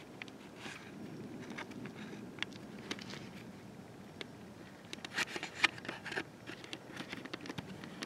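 Phone being handled: scattered small clicks, taps and rubbing against the microphone, with a quick run of louder clicks about five seconds in.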